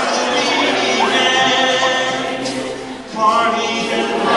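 A cappella vocal group singing sustained chords in close harmony. The sound dips briefly near the three-second mark, and then a new chord comes in.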